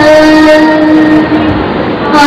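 A woman singing into a microphone, holding one long note after a small slide down in pitch; the note fades near the end.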